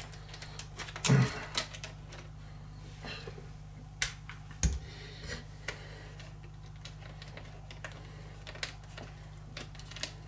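Scattered light clicks and taps of small plastic and metal parts as rear shock absorbers are handled and fitted onto a 1/12-scale RC truck's suspension by hand, the loudest knock about a second in.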